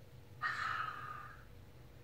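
A person's breath: one short breathy hiss that starts about half a second in and fades out over about a second.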